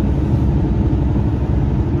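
Truck engine and road noise heard from inside the cab while driving: a steady low rumble.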